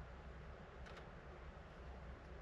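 Near silence: small-room tone with a low steady hum and a single faint click about a second in.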